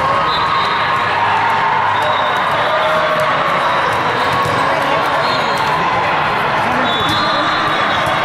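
Steady babble of many voices from players and spectators across a large hall of volleyball courts, with a volleyball bounced on the hard court floor.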